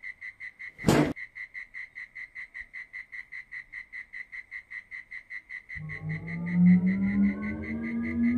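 Night-time chirping, a steady high pulse of about five or six chirps a second, with a short sharp noisy burst about a second in. Near the end a low spaceship hum starts and rises steadily in pitch as a flying saucer lifts into view.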